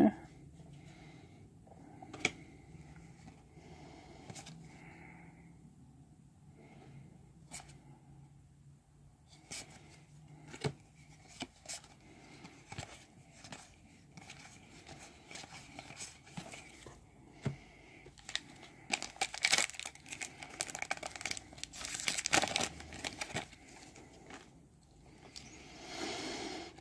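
Trading cards handled and slid against each other with small scattered clicks, then a booster pack's plastic wrapper torn open and crinkled, the loudest stretch, about twenty seconds in.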